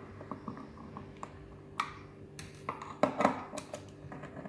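A screwdriver working screws out of an aluminium grow-light frame: scattered small clicks and scrapes of metal on metal, with a louder cluster of clicks about three seconds in. A faint steady hum runs underneath.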